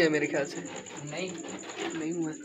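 Domestic pigeons cooing, mixed with a person's voice.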